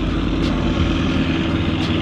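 A boat's outboard motor running with a steady low drone.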